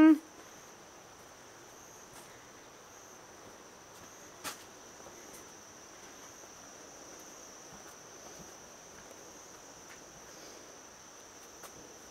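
Faint, steady high-pitched drone of insects trilling in the woods, with one brief click about four and a half seconds in.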